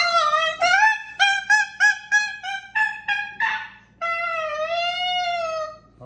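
Moluccan cockatoo singing a sing-song run of about ten short, high, voice-like notes, then one long held note that gently wavers in pitch.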